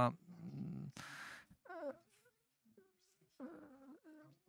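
Faint speech: a man's voice talking at low level in short stretches, with a brief hiss about a second in.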